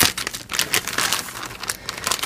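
Plastic poly mailer bag crinkling and rustling in irregular crackles as it is handled and cut open with scissors.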